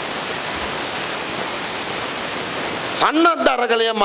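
A steady, even hiss of noise lasting about three seconds, starting and stopping abruptly.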